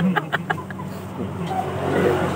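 A motorcycle engine running at a steady low hum, with a few short clicks in the first half second.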